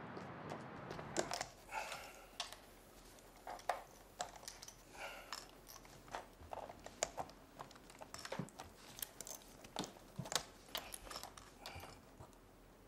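Fast, irregular typing on a laptop keyboard: quiet key clicks in uneven runs, starting about a second in.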